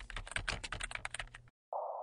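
Rapid computer-keyboard typing, a quick run of key clicks lasting about a second and a half, as text is entered into a search box. A steady hiss follows near the end.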